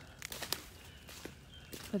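Faint footsteps on dry fallen leaves and twigs, a few scattered crackles and rustles underfoot.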